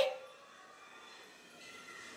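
Quiet indoor room tone with a faint steady hum, just after a woman's spoken question trails off.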